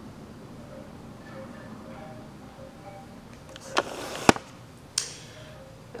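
Faint background music, then about four seconds in three sharp clicks within about a second, the middle one loudest: a small glass dropper bottle of facial oil being handled and its cap opened.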